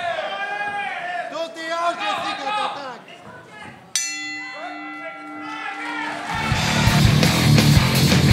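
Shouting voices, then a ring bell struck about halfway through and ringing on for about two seconds, marking the end of the round. Loud rock music starts near the end.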